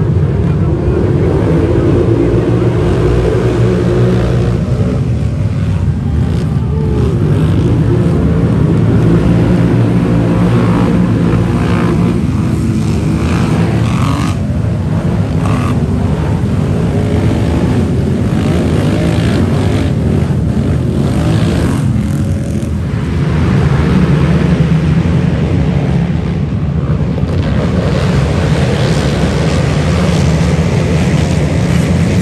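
Many racing ATV (quad) engines running hard together, a continuous engine noise with revs that rise and fall as they accelerate.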